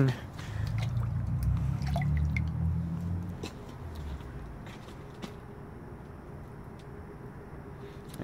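Water swishing and dripping as a freshly drilled metal piece is rinsed in a dish of quenching water. A low rumble fills the first few seconds, then fades.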